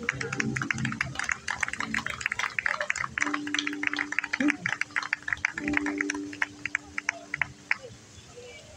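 A small outdoor crowd claps after a song ends, in many quick scattered claps that thin out and fade near the end. A low steady tone is held under the clapping in the second half.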